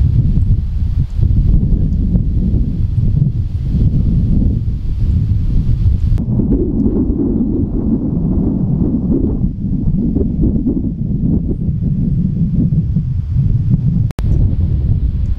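Wind buffeting the microphone: a loud, low, gusting rumble throughout, with the lighter hiss above it dropping away about six seconds in.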